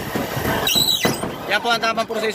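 Aviation snips cutting through a sheet-metal ridge roll, a rasping cut with a brief high metallic squeal about three-quarters of a second in; a voice talks over it near the end.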